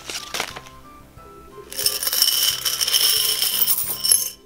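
Coins poured out of a glass jar onto a pile of coins and bills: a couple of light taps at first, then about two seconds in a continuous jingling clatter of coins that lasts to the end. Background music plays throughout.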